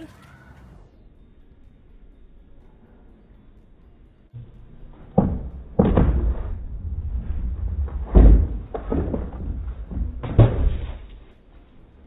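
Stunt scooter wheels rolling over concrete, with a run of hard thuds as the scooter hits, rides up and drops off a small wooden ramp set on a brick, starting about four seconds in. The loudest thud comes about eight seconds in.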